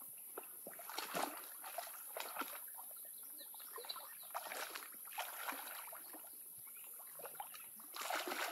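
A person wading through knee-deep marsh water, legs sloshing and splashing at an irregular walking pace.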